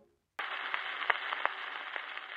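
Surface noise of a 78 rpm shellac record with no music in the groove: a steady hiss with several scattered crackle clicks, starting suddenly after a short silence.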